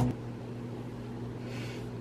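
Steady low electrical hum over faint background hiss, with a brief soft hiss near the end.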